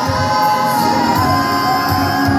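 A woman singing a gospel song into a microphone, holding long notes with vibrato, accompanied by an electronic keyboard with a steady beat.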